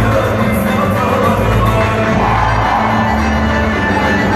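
Black Sea horon folk-dance music playing steadily over a repeating low beat.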